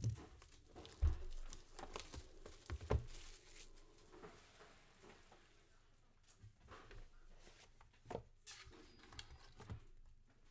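Hands handling a cardboard trading-card box and its cards: a few sharp knocks of cardboard on the table in the first three seconds, with short bursts of rustling and tearing packaging around three seconds and again past eight seconds.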